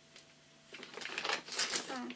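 Packaging rustling and crackling as craft supplies are handled and unwrapped. The sound starts just under a second in and grows busier and louder toward the end.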